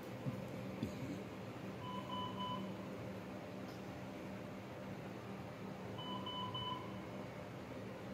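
A medical equipment alarm on a neonatal intensive care bed sounds a quick triple beep twice, about four seconds apart, over a steady low hum of equipment.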